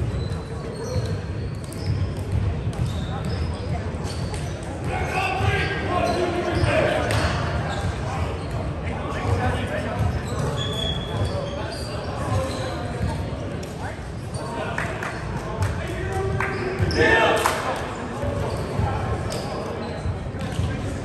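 Indistinct voices and shouts of players echoing in a large gym, with a louder shout near the end. Short knocks of balls bouncing on the hardwood floor are scattered throughout.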